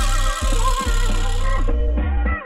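Instrumental hip hop beat: a sustained heavy 808 bass under a gliding melodic lead. The high end drops away near the end.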